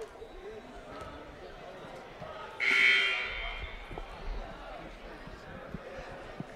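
Gym scoreboard buzzer sounding once, loud, for just under a second about two and a half seconds in, over the hall's chatter and a few ball bounces.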